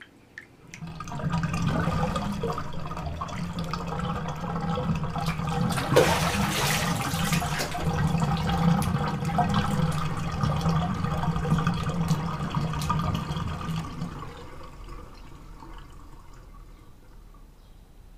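Water rushing and gurgling in a bathroom, starting about a second in and dying away after about fourteen seconds, with a brief louder surge about six seconds in.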